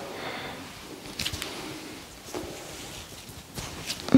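Faint rustling and a few short soft clicks from hands handling the head and neck during positioning for a chiropractic neck adjustment, picked up close on a clip-on microphone.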